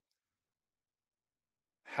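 Near silence: a dead-quiet pause with no background sound, before a man's voice resumes near the end.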